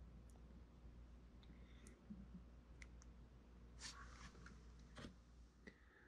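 Near silence: faint room tone with a few scattered small clicks and a short scratchy rustle about four seconds in, from hands and a sculpting tool handling clay.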